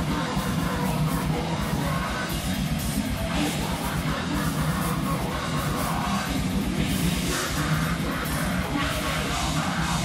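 Metal band playing live: distorted electric guitars, electric bass and fast drums, with a vocalist yelling into the microphone over them.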